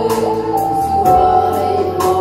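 A woman singing a Vietnamese song into a microphone, accompanied live on an electronic keyboard; her held notes slide up in pitch near the start.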